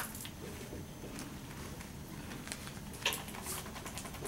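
Dry-erase marker writing on a whiteboard: short, faint taps and scratches as each stroke is written, with a sharper tap about three seconds in.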